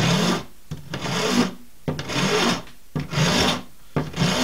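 Fine side of a farrier's rasp filing cow bone: about four long push strokes, each a loud rasping scrape with a short pause between, doing bulk shaping on a bone fish hook blank.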